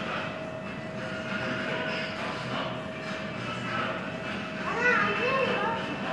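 Background chatter of museum visitors over a faint steady tone, with one voice coming through more clearly about five seconds in.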